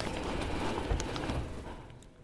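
Rustling and handling noise with a few faint clicks, fading out near the end.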